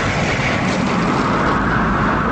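Steady, loud rushing rumble of a dramatized rocket-exhaust sound effect standing for the space shuttle's engines and the erupting hydrogen gas. A hissing layer swells in the middle and eases off near the end.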